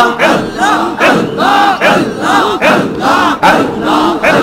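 Large crowd of men chanting zikir in unison, repeating the name "Allah" in a steady rhythm of about two calls a second.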